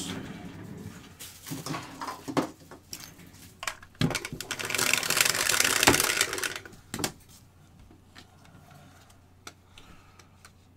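Dice rattling inside a clear plastic domed dice shaker: a few scattered clicks first, then about three seconds of dense rattling starting about four seconds in, ending with a sharp click.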